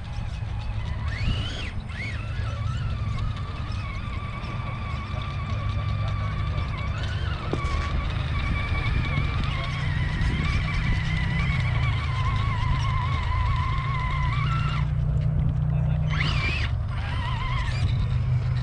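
Electric motor and gear drivetrain of a scale RC rock-crawler truck whining as it creeps over rocks. The pitch wavers and rises and falls with the throttle, sweeps up in short bursts of power, and stops for about a second near the end before picking up again. A steady low rumble runs underneath.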